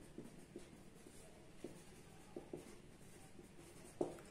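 Faint pen writing on paper: soft scratches and small taps of the pen strokes as a word is written out.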